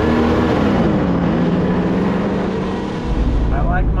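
Engine of a lifted Jeep Cherokee driving over sand: it climbs in pitch under throttle, drops back about a second in, then runs steadily. Near the end it gives way to the lower, steady rumble of a vehicle heard from inside its cab.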